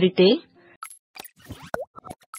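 Cartoon-style sound effects of an animated logo intro: a quick run of short pops and clicks, with one fast curving pitch glide like a boing near the end.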